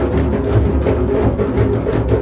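Drum music: deep drums beat a steady rhythm of about four strokes a second over a sustained low drone.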